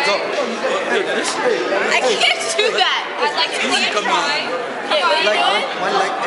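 Several people talking over one another in a large room, a lively babble of chatter with higher excited voices.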